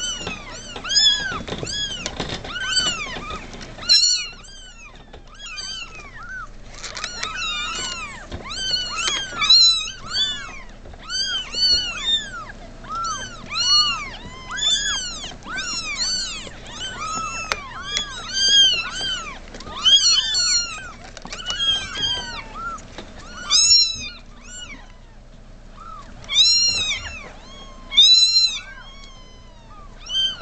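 A litter of newborn kittens, eyes still closed, mewing over and over in thin, high calls that each rise and fall in pitch, several crying at once. They are hungry kittens crying to be fed.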